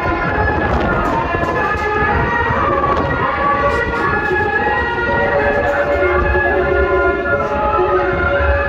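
Andean folk music accompanying costumed dancers: several wind instruments holding overlapping notes over a low, steady drum pulse.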